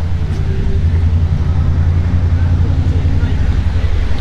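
Steady low engine rumble with an even fast pulse, like a motor vehicle idling close by.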